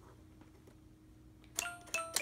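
Electronic chime from a LeapFrog Number Lovin' Oven toy as its buttons are pressed: a click and a short steady tone about a second and a half in, then another click and tone near the end.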